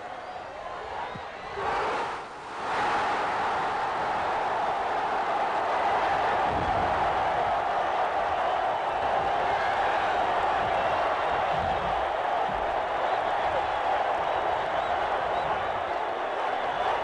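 Large stadium crowd cheering a goal: a first surge about two seconds in, a brief dip, then a loud, sustained roar.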